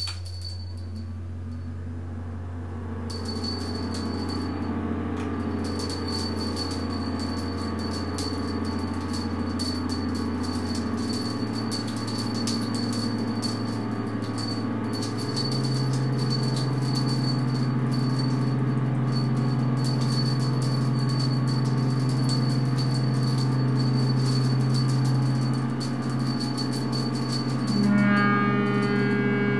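Experimental drone music: layered sustained low tones that step up in pitch twice, a little before and a little after the middle, under a thin high whine and a dense crackling, clicking texture that comes in after a few seconds, the whole growing louder.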